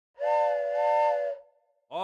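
Steam-train whistle sounding one chord of several notes for just over a second, with a slight dip in pitch partway through. Another pitched sound starts just at the end.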